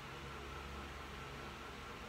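Faint, steady room tone and microphone hiss in a small room, with a low hum for the first second and a half.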